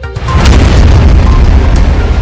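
Music jingle with a channel-logo sting sound effect. About a tenth of a second in, a sudden loud boom with a deep rumble swells over the music and slowly dies away.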